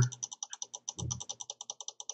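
Computer mouse scroll wheel clicking rapidly and evenly, about ten ticks a second, as a long document is scrolled; a short low sound about a second in.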